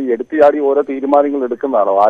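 Speech only: a caller talking without pause over a telephone line, the voice thin and narrow-band.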